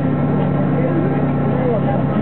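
Steady engine drone of a train heard from inside a carriage, with a low running hum and a few steady tones. Faint voices murmur over it.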